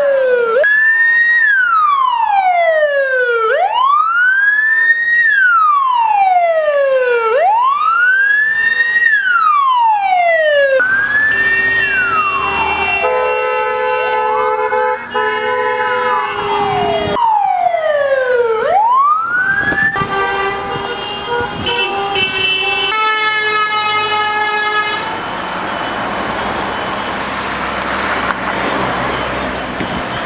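Police car siren in a slow wail, its pitch sweeping down and back up about every four seconds. From about eleven seconds in, long held vehicle horns sound over and after it, and the last few seconds are the rush of a line of vehicles driving past.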